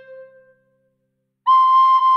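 Recorder playing a melody: a held low note ends right at the start and dies away over about half a second, then after a short silence a higher note an octave up starts about one and a half seconds in and holds.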